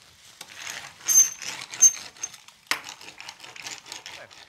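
Ribbed metal pencil roller turning on its spindle and rolling over resin-wet fibreglass mat to consolidate it, a fast ticking rattle with a few sharper clicks and a couple of short high squeaks.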